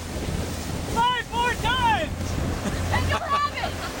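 Wind buffeting the microphone over the steady low hum of a pontoon boat's outboard motor under way. About a second in come three short, high-pitched shouted calls from people on board, and more voices near three seconds.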